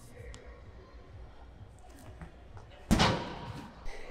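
A heavy thrown ball landing with one loud thud about three seconds in, the echo of the large hall trailing off over about a second.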